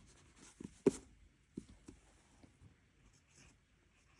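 Faint scratching of a rubber eraser and a pencil on notebook paper, with one sharp click about a second in.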